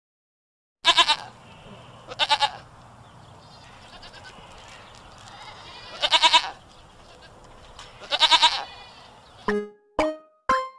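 Goat kids bleating: four quavering bleats, about one, two, six and eight seconds in, the last the longest. Music starts just before the end.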